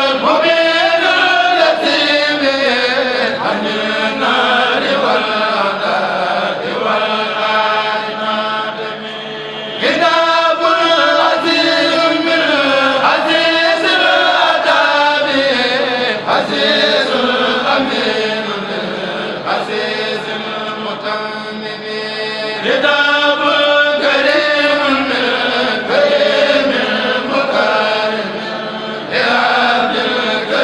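A Mouride kourel, a group of men chanting a khassida together into microphones, sings one melodic line in long phrases with brief pauses between them. A steady low hum runs beneath.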